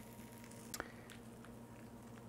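Faint, soft handling sounds as a pre-cooked sausage is pressed into batter in a corn dog maker, with one short click just under a second in, over a low steady hum.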